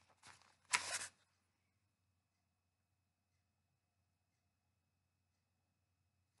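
A paperback book being handled and turned over in the hands: two short rustles of paper within the first second, then near silence.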